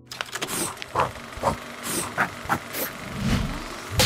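Sound design for an animated title sequence: a quick series of sharp percussive hits and airy whooshes about every half second over a faint held chord. A low swell comes a little after three seconds, and a strong hit lands at the end.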